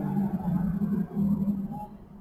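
A woman's drawn-out hesitation hum, a low steady "mmm" held with short breaks through a pause in her sentence.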